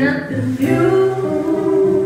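Live band performance: a woman sings lead with female backing vocalists over the band, holding long sustained notes over a steady bass line.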